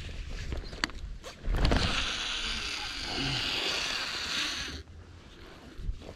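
A fishing reel whirring steadily for about three seconds, starting about a second and a half in with a low thump and cutting off abruptly, after a few light clicks.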